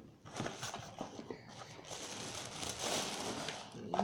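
Tissue paper and packaging rustling and crinkling as hands dig through an opened box, with a few light knocks; the rustling gets louder about two seconds in.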